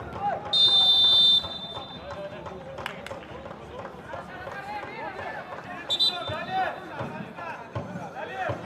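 Referee's pea whistle blown for a foul: one loud, steady blast of nearly a second about half a second in, then a short blast around six seconds. Players' shouts run throughout, with a single sharp knock about three seconds in.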